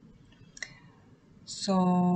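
Near quiet with one short, faint click about half a second in, then a single drawn-out spoken "So" near the end.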